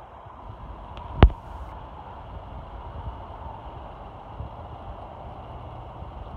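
Steady outdoor background noise with an uneven low rumble, and one sharp click a little over a second in.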